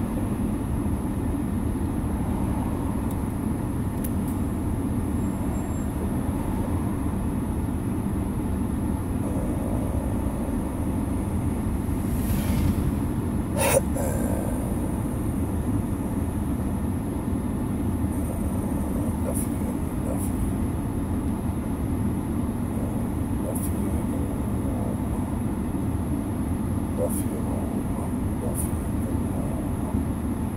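Steady low rumble inside a running car's cabin, with a single sharp click about fourteen seconds in.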